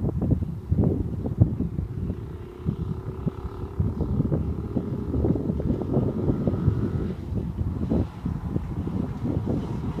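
Wind buffeting the microphone, with a go-kart engine droning faintly past for a few seconds in the middle.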